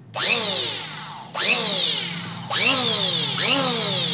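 Redfox RF-EP 1900 electric hand planer motor switched on four times in quick succession while held clear of any wood, each time whining up to speed and winding down on release. The motor's sound is smooth.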